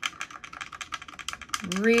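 A wet watercolour brush scrubbed fast back and forth in a half-pan of watercolour paint, a quick run of short scratchy ticks as the bristles work the dry pigment into a wet puddle.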